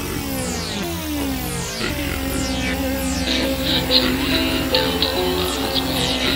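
Electronic music played on a Korg synthesizer keyboard: a flurry of falling pitch sweeps, then about two seconds in a steady low bass drone sets in under held notes, with a pulsing high tone joining about a second later.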